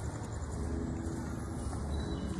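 Steady low rumble of outdoor city background noise, with faint tones over it.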